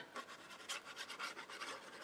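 Faint rubbing and scratching of a liquid-glue bottle's tip being drawn across cardstock as glue is run along a tab, in a string of small irregular scratchy ticks.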